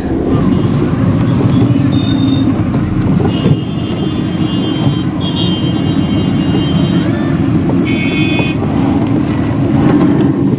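Steady road and engine rumble of a car driving, heard from inside. Horns honk four times, once briefly and then in three longer toots.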